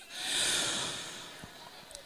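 A Quran reciter drawing a long, deep breath close to a handheld microphone between recited phrases. It swells over the first half second and fades away by about a second and a half.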